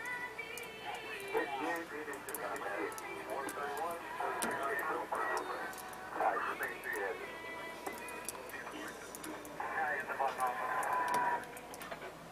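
Background speech and music playing together, like a broadcast from a set in the room: a voice talking over music.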